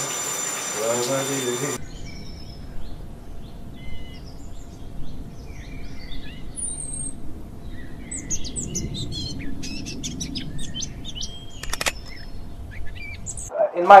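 Small birds chirping and calling: many short chirps and quick whistles over a low, steady background rumble.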